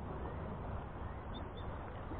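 Steady rush of flowing creek water, with two brief high bird chirps about a second and a half in.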